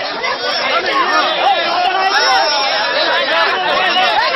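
A crowd of men all talking at once, many voices overlapping in a loud, unbroken chatter.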